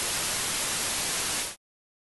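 Steady static hiss, like white noise, at an even level; it cuts off suddenly about a second and a half in, leaving silence.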